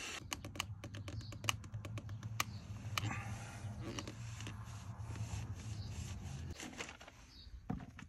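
Small clicks and ticks of a band-type oil filter wrench and plastic bag as a spin-on oil filter is worked loose by hand, coming quickly in the first couple of seconds and then more sparsely.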